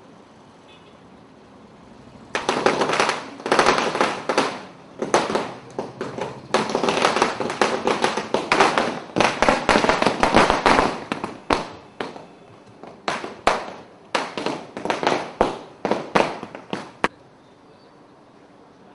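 A long string of firecrackers going off in rapid sharp cracks for about fifteen seconds, with a few brief pauses, ending in scattered single bangs.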